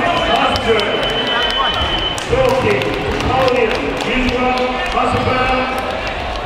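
Overlapping voices and an amplified announcer's voice filling a large sports hall, with scattered sharp thuds and slaps throughout.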